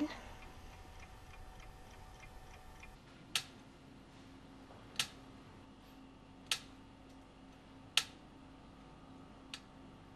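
A clock ticking slowly, one sharp tick about every second and a half from about three seconds in, over a low steady hum.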